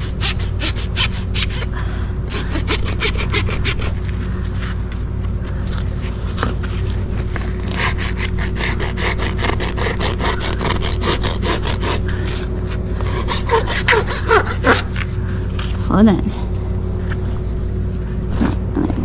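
Steel hoof rasp filing a horse's front hoof in rapid, repeated back-and-forth strokes, a coarse rhythmic scraping as the hoof is levelled during a trim.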